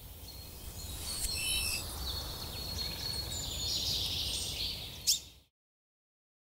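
Birds chirping over a low outdoor rumble, starting abruptly and cutting off about five and a half seconds in. A faint click comes about a second in, and a sharp click, the loudest sound, just before the end.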